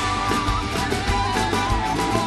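Live Andean-fusion band playing: a wind-instrument melody over drums, bass and guitar.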